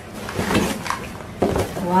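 Paper gift bag and tissue paper rustling and crinkling as a present is unwrapped, with two sharper crumples about half a second and a second and a half in.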